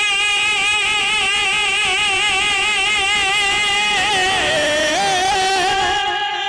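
A man's voice singing a naat into a microphone, holding one long high note with a wide vibrato. The pitch dips and recovers about four seconds in, and the note breaks off at the end.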